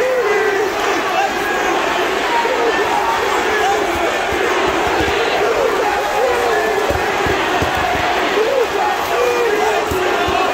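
Large arena crowd cheering and shouting steadily, many voices yelling over one another in a continuous din.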